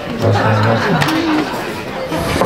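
Electric guitar playing a couple of held single notes, a low one and then a higher one, over audience chatter in the room.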